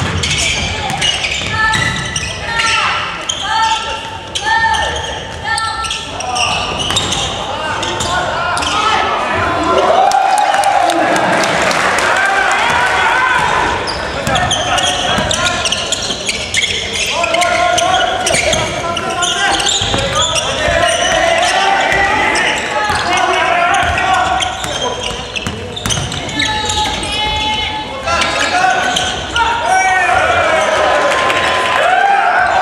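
Basketball game in a gymnasium: the ball dribbling on the hardwood court, mixed with players' and bench shouts that echo in the large hall.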